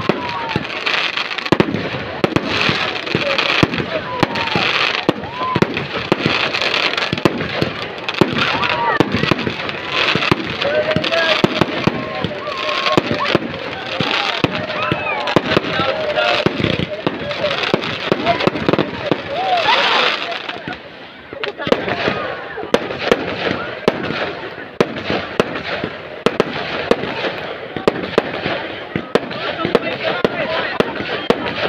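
Fireworks going off in rapid succession: a dense stream of sharp bangs and crackles, a little quieter in the last third.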